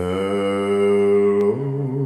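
Recorded ballad playing through Coral 10 Flat full-range loudspeakers driven by a Fisher 800 tube receiver: a long held note that starts suddenly and, about one and a half seconds in, steps down to a lower note with vibrato.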